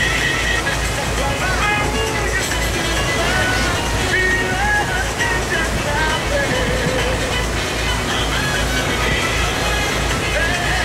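Music with singing, over the steady low rumble of a boat's engine.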